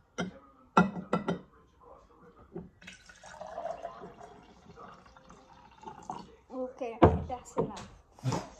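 Pickle juice poured from a glass jar into a tall drinking glass, a steady splashing pour lasting a few seconds. A few knocks from the jar being handled come near the start, and a loud knock near the end.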